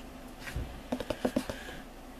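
A few faint clicks and taps, with a soft low thump about half a second in.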